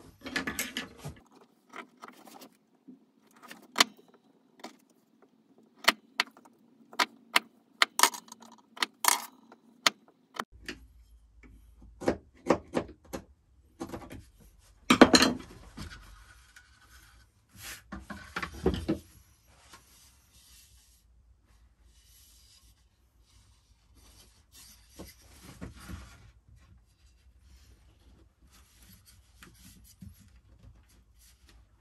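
Hand tools and wooden crib parts being handled on a woodworking bench: a string of sharp clicks and wooden knocks as tools are picked up and set down and the pieces are fitted together, loudest about halfway, with only scattered light handling sounds in the last third.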